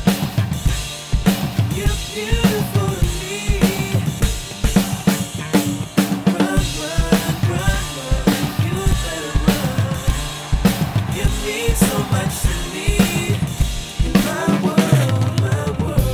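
A Ludwig drum kit played along to a recorded song: kick drum, snare and cymbals in a fast, steady stream of strokes over the track's instrumental music.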